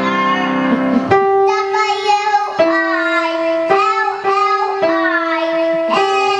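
A young child singing, accompanied by an instrument. From about a second in, the instrument plays long held notes that change pitch roughly every second.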